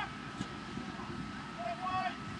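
Faint, distant voices of players and spectators calling across an outdoor sports pitch over a steady background hiss, with one short call near the end.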